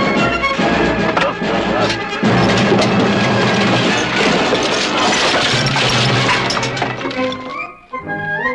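Loud orchestral film score, with a dense run of crashes and impacts mixed in from about two seconds in. It falls away near the end.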